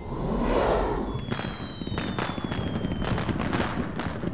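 Fireworks going off: a rising rush of noise, then from about a second in a string of sharp bangs and crackles, with a high whistle sliding slowly down in pitch.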